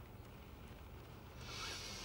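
Quiet room tone, with a soft hiss coming in about two-thirds of the way through.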